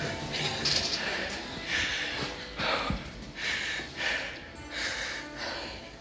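A person breathing in short, noisy breaths, roughly one a second, over background music.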